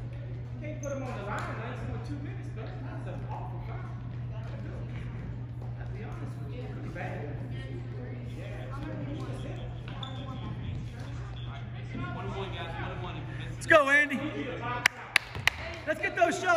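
Spectators' voices chattering in a gym over a steady low hum, then a loud shout near the end, followed by three sharp bounces of a basketball on the hardwood court as the shooter dribbles at the free-throw line.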